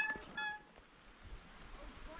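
The tail of a man's loud shout, cut off at the very start. Then it goes quiet, with a faint distant voice calling back.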